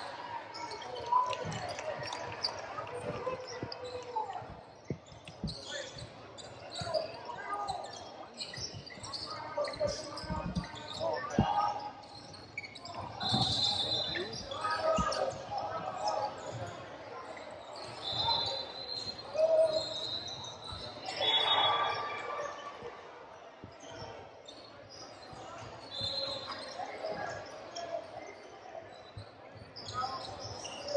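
Basketball bouncing on a hardwood gym floor during live play, with repeated sharp knocks and players' shouts echoing in the large hall. A few brief high squeaks come in around the middle.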